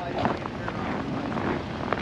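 Footsteps crunching irregularly on packed snow, with wind buffeting the microphone and a brief faint voice near the start.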